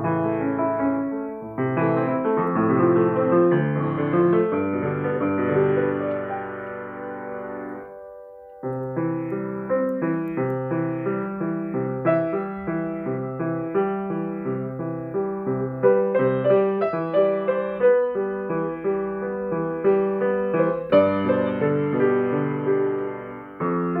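Steinway & Sons baby grand piano being played: a passage of chords and melody that fades and breaks off about eight seconds in, then a new passage of repeated chords under a melody.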